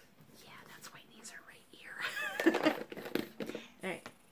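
A woman whispering and cooing softly in baby talk, rising to a louder, high, wavering vocal sound about two seconds in.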